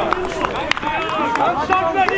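Several players shouting and calling to each other at once on a football pitch, their raised, high voices overlapping. A single sharp knock cuts through a little under a second in.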